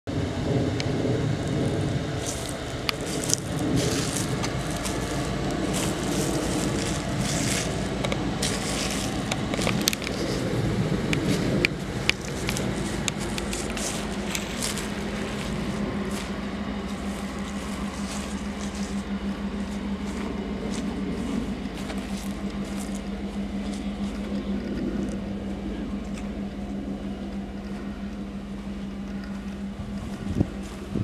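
Ford F-150 pickup's engine idling steadily, with footsteps crunching on dry grass, mostly in the first half.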